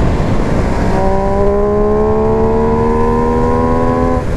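A 140-horsepower sport motorcycle accelerating hard in a high gear. Its engine note climbs steadily from about a second in, over heavy wind rush on the rider's microphone.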